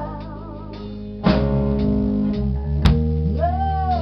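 Live band playing a song: guitar to the fore over bass and drum kit, with a wavering held melody line and a sharp hit a little before three seconds in.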